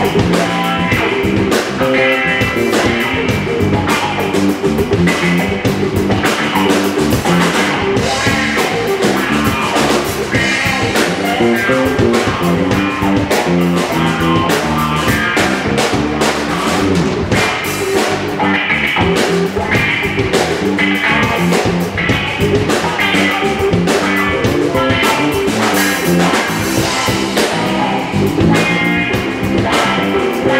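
Live blues band playing, with electric guitar over a Tama drum kit, loud and steady throughout.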